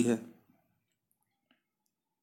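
Near silence after a man's spoken word trails off, with one faint click about one and a half seconds in.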